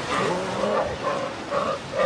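Sea lions calling, several overlapping wavering cries.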